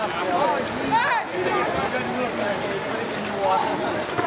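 Several people shouting and calling at once, with one louder shout about a second in, over the splashing of swimmers.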